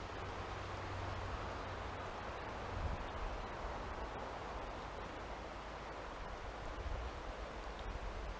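Steady rushing of a river flowing over rocks and rapids.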